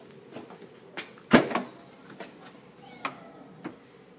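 Vauxhall Astra tailgate being unlatched and opened: a small click about a second in, then a loud clunk with a second knock just after, followed by a high hiss and another click as it lifts.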